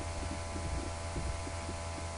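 Steady low electrical mains hum with its evenly spaced overtones and a constant background hiss, picked up by the recording microphone.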